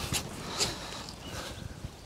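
Garden fork and hands working damp soil while lifting leeks from a raised bed: soft crunching and rustling of earth and roots, with two brief sharp sounds near the start and about half a second in.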